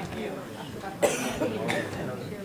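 Quiet indistinct talk among people in a hall, with a sharp cough about a second in.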